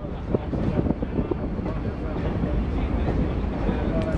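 Steady rumble and clatter of a passenger car riding over the rails in a moving steam-hauled train, heard from inside the open-sided car.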